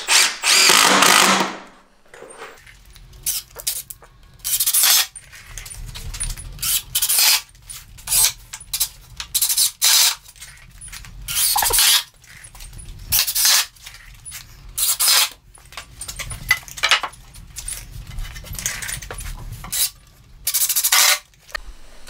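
Cordless impact driver driving deck screws through pine boards into the bench frame, in many short bursts of a second or less with a longer run at the start.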